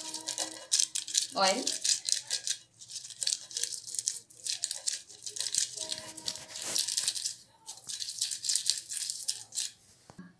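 Silicone pastry brush stroking oil around the inside of an aluminium cake tin lined with butter paper, a quick run of short brushing strokes that goes on and off.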